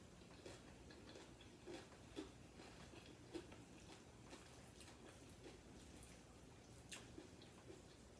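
Faint eating sounds: soft chewing and mouth clicks from loaded nachos being eaten, scattered irregularly, with one sharper click near the end.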